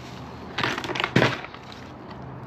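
Plastic retail packaging crinkling and rustling as it is handled, with a few short crackles and one sharper crack a little over a second in.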